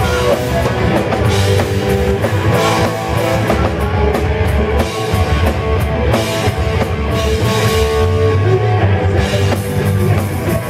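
Punk rock band playing live: electric guitars over a drum kit, loud and continuous.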